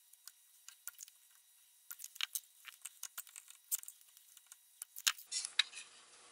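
Faint, scattered light clicks and taps, bunched about two seconds in and again near the end, from a desoldering iron working on the solder joints of a switching power supply's circuit board and the board being handled.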